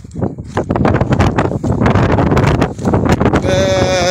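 Wind buffeting the microphone and footsteps on loose stones and gravel; about three and a half seconds in, a single long, steady pitched call begins and is held for about a second.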